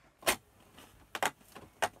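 Cardboard advent calendar box being pried open by hand: a few sharp crackles and rustles of cardboard and packaging, the loudest about a quarter second in, two more near the middle and end.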